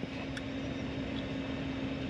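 Steady low hum inside the cab of an idling Dodge Ram pickup, with one faint click under half a second in.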